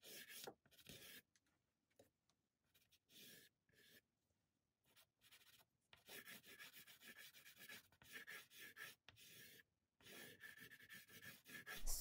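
Soft pastel stick stroking across non-sanded toned paper: faint, quick scratchy strokes in bursts, with a pause of a few seconds near the middle.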